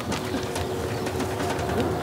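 A vehicle engine running steadily, a low drone with a faint even hum over it and a few light clicks.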